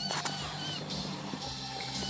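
Birds chirping outside a car, a few short high chirps early on, over a steady low hum.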